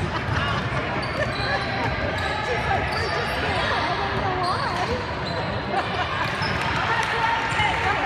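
Indoor basketball game: a ball bouncing on the hardwood court, short high sneaker squeaks, and a steady mix of players' and spectators' voices calling and talking in a large gym.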